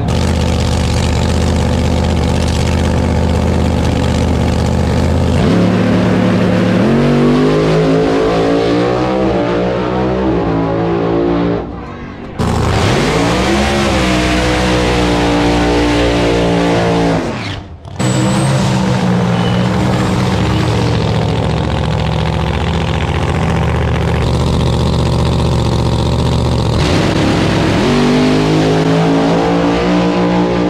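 A pro mod drag car's engine at full throttle on a pass. Its pitch climbs in long sweeps as the car accelerates, broken by two abrupt drop-outs about twelve and eighteen seconds in.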